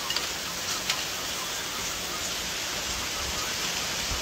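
Steady rain falling, an even hiss, with a couple of faint light clicks in the first second.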